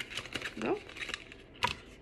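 Light clicks and taps of a small jewelry box being handled and opened in the hands, with one sharper click about one and a half seconds in.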